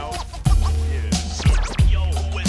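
Hip-hop beat with heavy kick drums and a steady bass line, with turntable scratching over it in a break between rap verses.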